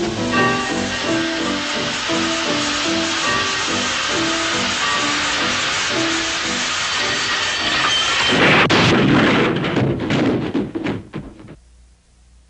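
Orchestral instrumental music, then about eight seconds in a loud rumbling thunderclap that dies away.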